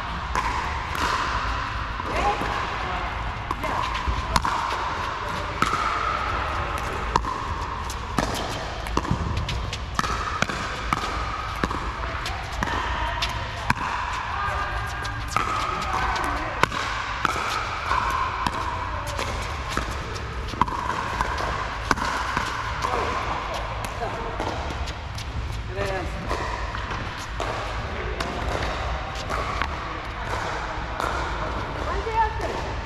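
Pickleball paddles striking a hard plastic pickleball in a doubles rally, with the ball bouncing on the court: sharp pops every second or two that echo in an indoor court hall. Background chatter runs underneath.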